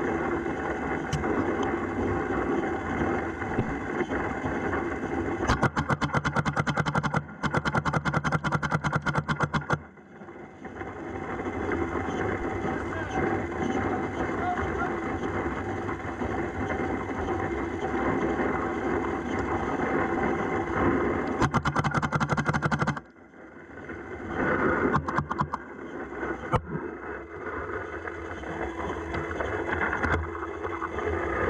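Paintball marker firing in rapid strings of about ten shots a second, one long string of a few seconds and a shorter one later, with a few single shots after it; an electric hopper's motor whirs under each string as it feeds paint. Wind rushes on the microphone in between.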